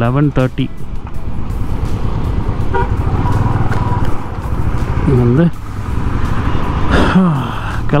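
Riding noise from a Royal Enfield Classic 350 single-cylinder motorcycle at highway speed: steady wind buffeting over the engine's low running note. A vehicle horn toots briefly about three seconds in.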